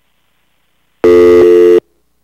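A loud, buzzy electronic tone, under a second long, starting about a second in, with a slight break halfway through, typical of a telephone line or meeting audio system.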